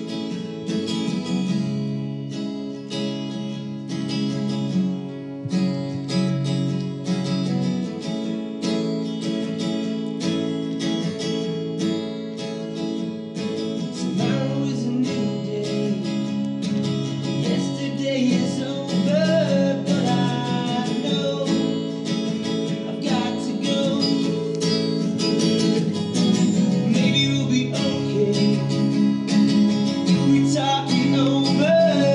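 Two acoustic guitars playing an indie song, strummed chords with a steady rhythm; about halfway through a man's voice comes in singing over them.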